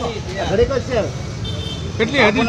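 A man's voice for about the first second, then a steady low rumble of road traffic.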